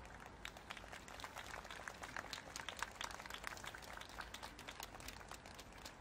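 Faint, irregular clicking from the surrounding crowd, several sharp clicks a second over a low hiss.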